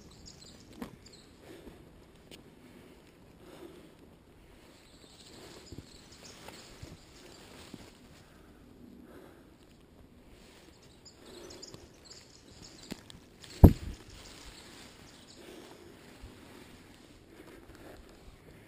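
Soft footsteps on a dirt forest trail, with fern fronds brushing past. About three-quarters of the way through comes a single sharp knock, the loudest sound.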